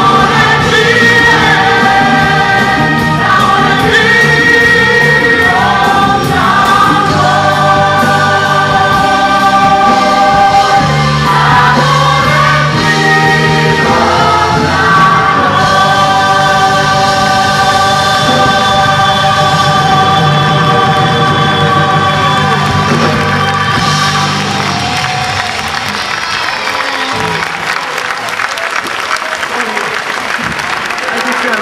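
Choir and solo voices singing with a live band, in long held chords, the song ending on a sustained chord about 24 seconds in. Applause rises near the end.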